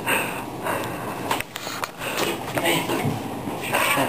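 Breathy laughter and snatches of indistinct voices, with a few short knocks.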